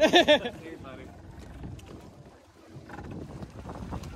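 A short loud exclamation from a passenger at the start, then low water sloshing against a boat hull with wind on the microphone.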